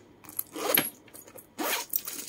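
Metal zipper on a leather handbag's main compartment being pulled open in two short rasps, with the bag's metal rings and clasps clinking.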